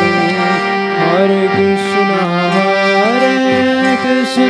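Vaishnava devotional song (bhajan): a melody gliding between held notes over a sustained harmonium drone, with a few hand-drum strokes.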